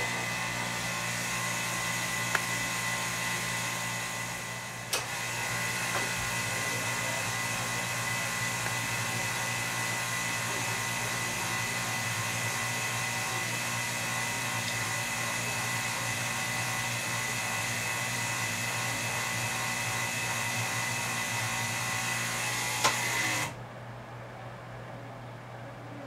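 Electric pump of a Buon Vino tabletop bottle filler running steadily with a whine, pumping sanitizer solution up through the filler into a bottle. It sags briefly with a click about five seconds in and cuts off near the end.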